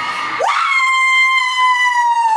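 A woman's high-pitched scream of excitement as a Miss USA winner is crowned. It shoots up about half a second in and is held as one long note, sinking slightly in pitch.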